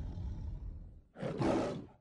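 Lion roar sound effect: a roar trails off into a low rumble, then a second, shorter roar comes about a second in and cuts off abruptly.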